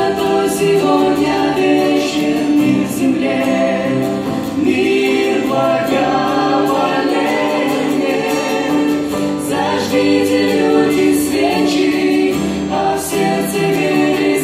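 Small vocal group of men and women singing a Russian Christmas song together through microphones, with acoustic guitar accompaniment; held notes, steady and loud throughout.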